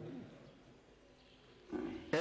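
A pause in a man's reading of a sermon. His voice trails off, a short quiet stretch with faint low room hum follows, and near the end his voice starts again with a brief drawn-out sound.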